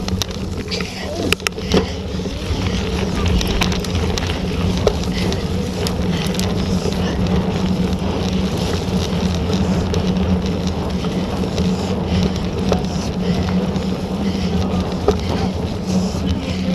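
Mountain bike ridden fast over a muddy dirt track, heard from a camera on the bike: a continuous rumble of tyres and frame, with scattered rattles and clicks from the bike over bumps and wind on the microphone.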